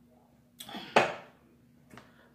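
A short voiced sound from the woman, then a single sharp knock about a second in as a drinking cup is set down on the table.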